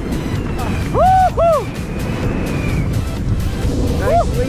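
Two short excited whoops from a skydiver about a second in, rising and falling in pitch, over wind rushing on the microphone under a newly opened parachute, with background music fading.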